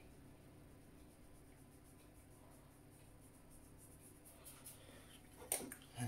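Near silence: quiet room tone with a faint steady hum, and a single soft knock near the end.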